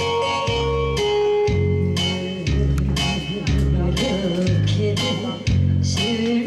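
Instrumental introduction of a traditional Korean trot song: a melody over a bass line that changes note about once a second, before the vocal comes in.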